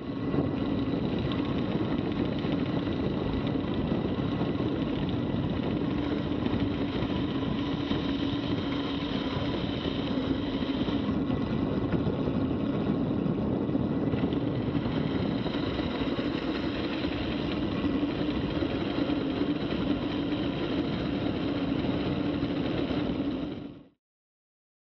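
Steady wind rush and road noise on a bike-mounted action camera's microphone during a road-bike descent at about 30 mph. It cuts off just before the end.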